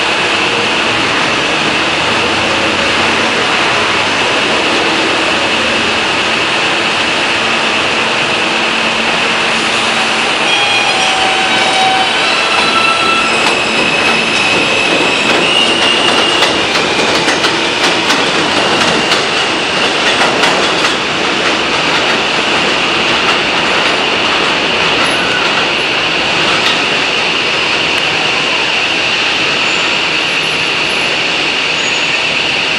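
R160A subway train with Alstom ONIX propulsion pulling out along an elevated steel structure. Its motors give a series of stepped rising tones as it accelerates, from about ten seconds in, while the wheels clatter over rail joints for several seconds. A high steady whine from the rails and train runs underneath throughout.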